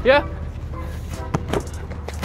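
Basketballs hitting the outdoor hard court: two sharp knocks close together about a second and a half in, over a low steady background.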